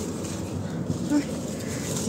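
A woman's brief exclamation, "ay", about a second in, over steady low background noise.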